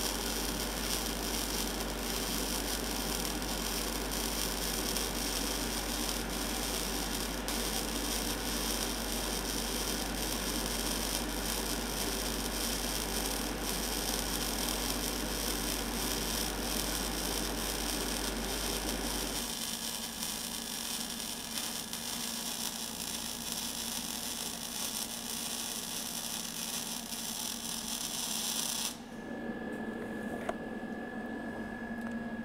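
Gas-shielded, wire-fed (MIG/MAG) welding arc burning steadily on a vertical plate joint as a dense, even hiss. It cuts off suddenly about a second before the end.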